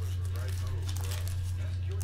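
Foil trading-card pack wrapper crinkling and tearing as hands open it, in small crackles. Under it runs a steady low hum, with faint voices in the background.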